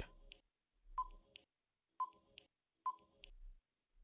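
Three faint, short electronic beeps about a second apart: a countdown-timer sound effect marking the thinking time before a quiz answer.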